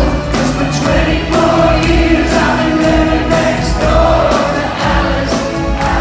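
Soft rock band playing live: sung vocals over drums, bass and guitars, with a steady beat, heard from the audience in a large hall.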